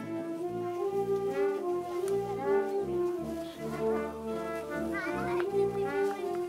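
Wind band playing live, a melody in long held notes over sustained chords.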